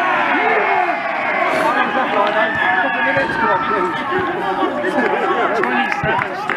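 Crowd of spectators cheering and shouting at a goal, many voices at once.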